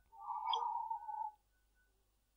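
A man sipping water from a glass: one soft sip that lasts just over a second.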